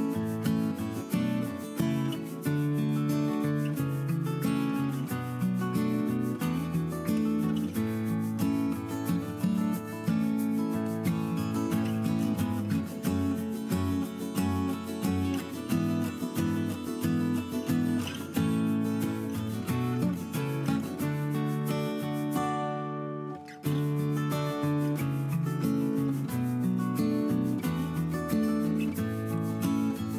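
Background instrumental music at a steady level, dipping briefly about three-quarters of the way through.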